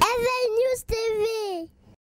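A high singing voice in a short closing jingle: two brief sung phrases with a short click between them, the second gliding down in pitch before it stops.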